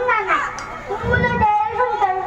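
A child's high-pitched voice speaking into a stage microphone and PA, with a brief low sound about a second in.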